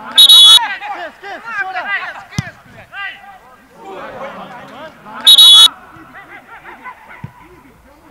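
Referee's whistle blown in two short, shrill blasts about five seconds apart, over players shouting on the pitch, with a couple of sharp thuds in between.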